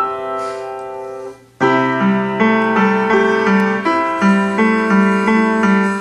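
Upright piano: a held chord dies away, then a short pause about a second and a half in, then a steady, evenly paced passage over repeated bass notes.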